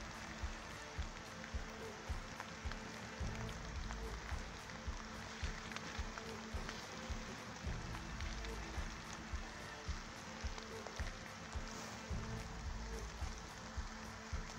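Quiet woodland ambience: soft low rumbles of wind on the microphone over a faint, even hiss, with a faint steady hum underneath.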